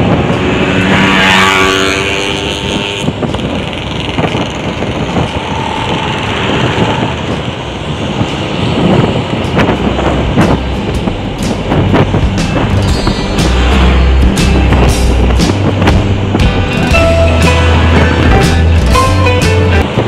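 Wind and running noise from a moving Honda motorcycle, mixed with music; from about halfway a bass line and an even drum beat come in.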